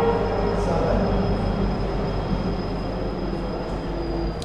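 Steady rumbling background noise with a constant low hum and a faint high-pitched whine underneath.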